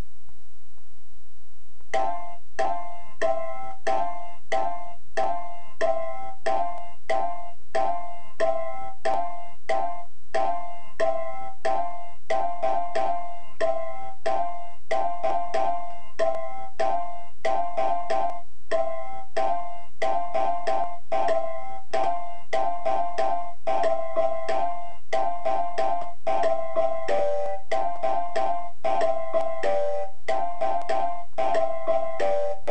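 A short sampled music phrase, chopped into slices by FL Studio's Fruity Slicer and triggered from a piano-roll pattern, loops over and over. The same few short pitched notes repeat in a steady rhythm, starting about two seconds in.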